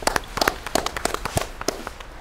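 A few people clapping their hands, sparse and irregular, the claps thinning out near the end.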